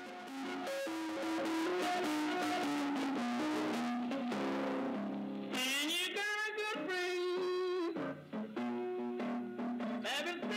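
Guitar playing a blues tune: picked single-note runs, with wavering, bent notes from about halfway through.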